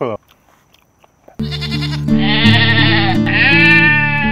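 A goat-bleating sound effect with music under it, dubbed in to cover a man's gagging and retching. It starts suddenly about a second and a half in, after a quiet pause, and is loud and wavering.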